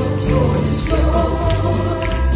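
Live worship band playing a gospel hymn: a woman singing lead over keyboard, drums and trumpet, with cymbal strikes keeping a steady beat about twice a second.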